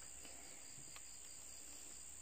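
Quiet room tone with a faint, steady high-pitched chirring like crickets, plus a couple of soft ticks from ribbon being handled.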